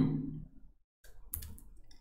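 A few faint short clicks and taps of a stylus on a pen tablet as digits are handwritten, about a second and a half in.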